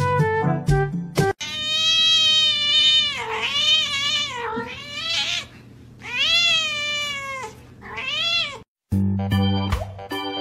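A domestic cat meowing loudly in several long, drawn-out calls that rise and fall in pitch, starting about a second in and ending shortly before the end. A brief stretch of music comes before the calls and again near the end.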